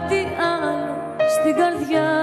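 A woman singing a Greek song live, holding notes that bend in pitch, over sustained instrumental accompaniment, with a short break for breath about a second in.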